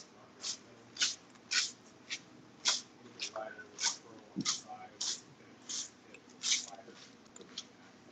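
Stir stick scraping around the inside of a plastic mixing cup while epoxy resin is mixed, in a series of short, sharp scrapes about two a second.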